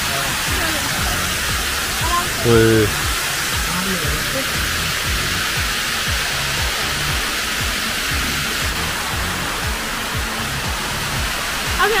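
Rainwater rushing and cascading down flooded stone steps, a steady loud roar, with background music carrying a regular low beat underneath. A voice briefly breaks in once early on.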